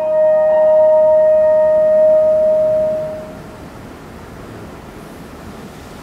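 French horn holds a long final note over piano chords, then fades out about three seconds in. A steady background hiss remains after it.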